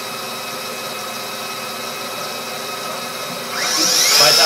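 Star SR-16 CNC Swiss lathe running with a steady mechanical hum and several steady whines. About three and a half seconds in, the rotary cross-milling and drilling tool spindle spins up with a rising whine to a louder, high-pitched whine at its top speed of 5,000 rpm, which sounds extremely nice.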